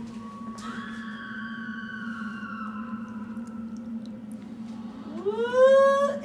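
A woman's high-pitched squeal, held about two seconds and sliding slowly down, then near the end a rising 'ooh' that climbs in pitch. A steady low hum runs underneath.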